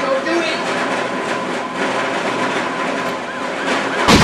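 A dense, steady din with indistinct voices in it; about three and a half seconds in, an emergency siren starts wailing in quick rising and falling sweeps.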